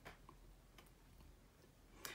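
Near silence: room tone with faint low hum and a couple of faint ticks in the first second.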